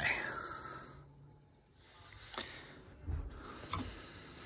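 Light knocks and clicks of hands handling furnace parts, a few short strikes in the second half, after a faint low hum dies away in the first second and a half.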